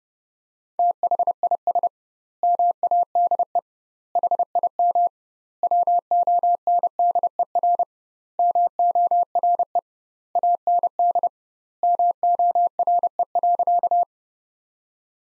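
Morse code sent as a single steady beep at 30 words per minute, with double-length gaps between words. It comes in seven word groups, the repeat of the sentence "this made him wonder more and more".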